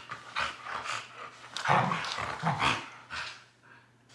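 Two Siberian huskies play-fighting, giving a run of short, rough vocal sounds and breaths in irregular bursts that die away in the last second.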